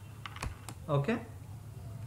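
A few sharp key presses on a computer keyboard in quick succession during the first second, as code is typed into an editor.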